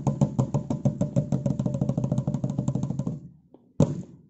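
Drum beaten in fast, even strokes, about eight a second, that stop about three seconds in; a single loud stroke follows near the end.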